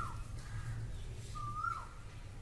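A bird calling twice, each call a short whistled note that rises and then drops sharply, repeating about every second and a half.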